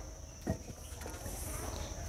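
A steady, high-pitched insect trill in the background, with one brief knock about half a second in.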